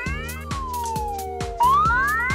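Upbeat children's background music with a steady beat, over cartoon sound effects that glide in pitch: a slow falling tone through the middle, then a sharp rising sweep near the end as another part pops out.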